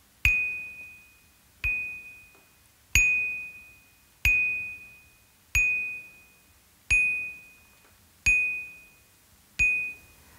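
A single high, bell-like note struck eight times at an even pace, about one every second and a third, each ringing out and fading before the next.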